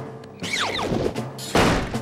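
A cartoon kitchen door slamming shut with one loud bang about one and a half seconds in, just after a few quick falling tones, over background music.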